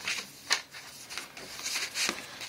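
Cardstock pages and flaps of a handmade paper album being handled and turned: soft papery rustling with one short, sharp paper snap about half a second in.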